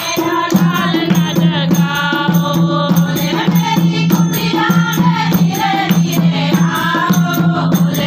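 A group of women singing together to a dholak, the two-headed barrel drum played by hand, with steady hand-clapping keeping the beat.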